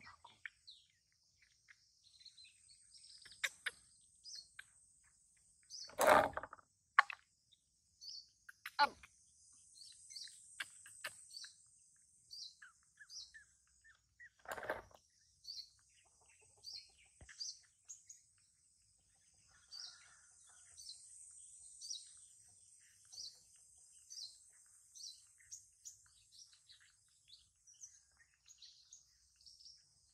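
Small birds chirping outdoors, short repeated calls about once a second, over a steady high buzz of insects. Two brief louder sounds stand out, one about six seconds in and one about halfway through.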